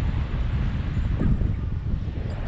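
Wind buffeting the microphone of a pole-mounted camera on a tandem paraglider just after takeoff: a steady, loud low rumble of rushing air.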